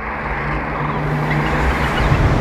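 A rising whoosh swelling louder, with a low held tone underneath, leading into an outro music sting.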